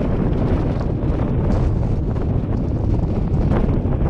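Wind buffeting the microphone of an action camera mounted on the outside of the car, a steady, fairly loud rumble.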